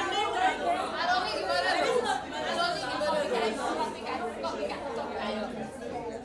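A group of people, mostly women, talking and laughing over one another in overlapping chatter that echoes slightly in the room.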